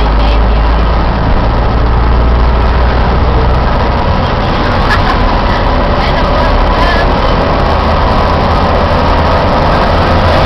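Car driving at highway speed, heard from inside the cabin: a loud, steady drone of engine and road noise.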